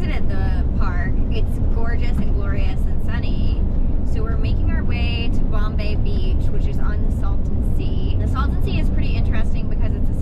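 A woman talking steadily over the continuous low rumble of engine and road noise inside the cab of a moving Ram ProMaster camper van.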